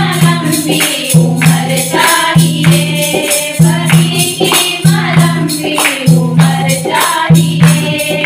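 A group of women singing a Hindu devotional kirtan in unison, with hand claps and a dholak drum keeping a steady rhythm.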